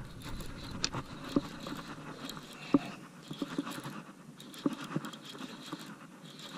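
Handling noise while reeling in a hooked fish: a fishing reel being cranked, with sleeves and hands rubbing and bumping against the camera. Irregular clicks and knocks over a rustling background.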